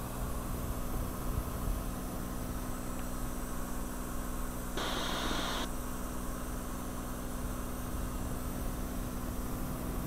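Steady in-flight cabin drone of a Cirrus SR20's engine and propeller: an even low hum under hiss. A brief burst of hiss comes about five seconds in.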